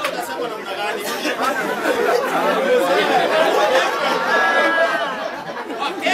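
A seated audience chattering: many voices talking over one another.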